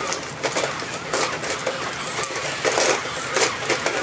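WowWee Robosapien RS Media toy robots walking: whirring gear motors under irregular plastic clicks and clacks, a few a second, as their feet and joints move on a concrete floor.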